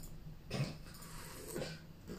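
Faint, airy slurping of tea sipped from a tasting spoon: one short sip about half a second in and a second short intake of breath a second later.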